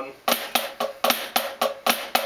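Drumsticks striking a rubber practice pad in rapid, even strokes from about a third of a second in, playing right-handed Swiss triplets: a flam followed by right, left, repeated in threes.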